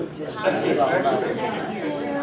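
Indistinct talking: voices in a meeting room, with no clear words.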